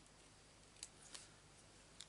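Small craft scissors snipping a piece of card, two faint, short snips about a second in.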